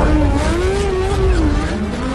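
Lamborghini Huracán Evo's V10 engine revving with its pitch rising and falling repeatedly as the car drifts.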